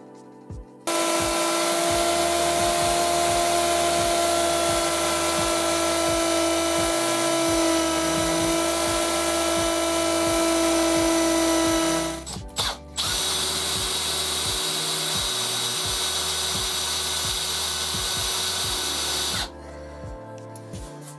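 Hand-held electric power tool running at high speed with a steady whine. It stops briefly about twelve seconds in, then runs again at a different, higher-sounding pitch for about six more seconds.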